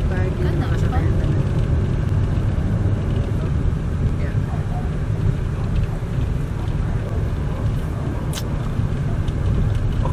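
Steady low rumble of a Suzuki Dzire sedan running, heard from inside its cabin.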